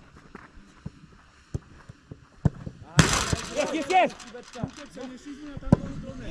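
Footballs being kicked on a grass training pitch: a series of sharp, separate thuds of boot on ball, a second or so apart, the loudest one near the end. A shout of voices breaks in about three seconds in.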